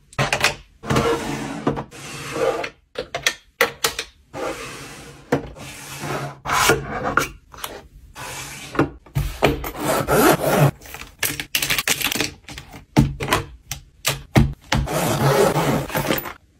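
Hands placing pens, markers and sticky notes into wooden desk drawers: a string of sharp clicks and knocks of plastic on wood, with rubbing and sliding swishes between them.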